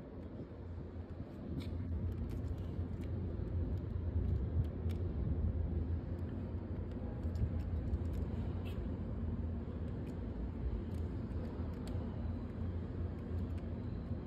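Low, steady rumble of an Underground station that grows louder about a second and a half in, with scattered light clicks from a plastic transforming toy car being handled.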